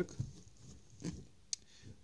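Faint handling of a plastic courier mailer held in the hands: a few soft bumps and one sharp click about one and a half seconds in.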